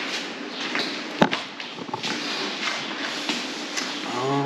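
Blue painter's tape being pulled off the roll and laid along plywood mold ribs: a crackly peeling and handling noise, with one sharp click about a second in.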